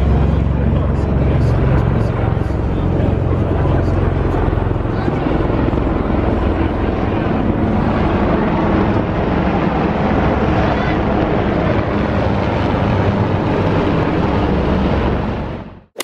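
Two aircraft flying low overhead, a deep rumble heaviest in the first few seconds and then thinning out, with crowd chatter underneath; the sound fades out just before the end.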